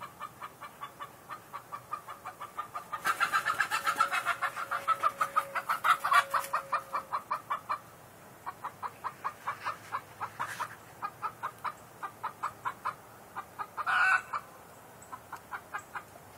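Chicken clucking in a steady, even series of about three to four clucks a second, louder for a few seconds early on, with one louder squawk near the end.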